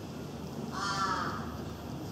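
A single harsh bird call, a crow-like caw of well under a second, heard about two-thirds of a second in over quiet stadium background.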